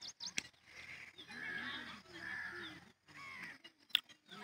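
Birds calling: a few quick, high chirps near the start, then longer, harsher calls through the middle, with a sharp click near the end.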